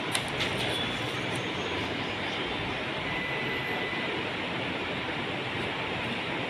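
A room air cooler's fan running with a steady rush of air, with a few faint paper rustles near the start as register pages are handled.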